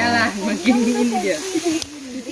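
Indistinct voices of several people talking, over a steady hiss, with a sharp click near the end.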